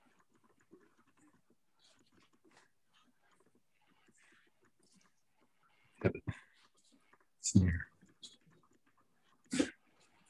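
A dog barking three times over faint household room noise through a call microphone: a quick double bark about six seconds in, a longer bark about a second and a half later, and a last bark near the end.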